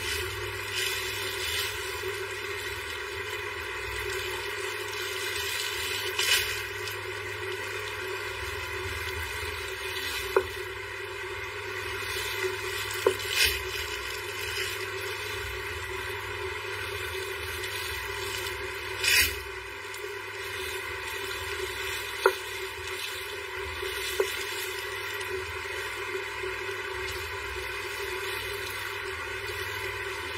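A steady background hum, with a few short rustles and sharp clicks as clothing and plastic-bagged goods are handled.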